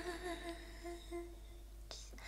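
A woman's voice holding a soft, wavering hummed note that fades away over the first second or so. Near the end comes a single faint click.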